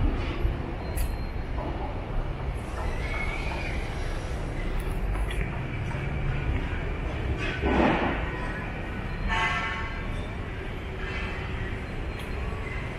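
Steady low rumble of city traffic heard from a park path, with a brief louder swell about eight seconds in.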